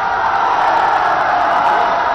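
A large crowd cheering and shouting together, loud and sustained.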